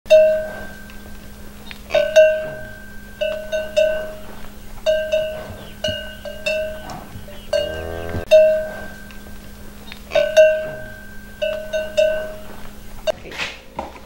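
Intro jingle built on a cowbell-like metal bell, struck again and again in short groups, each strike ringing briefly. A short call with a wavering pitch sounds about halfway through, over a steady low hum.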